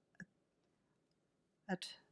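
One short click about a fifth of a second in, against near silence, before a spoken word near the end.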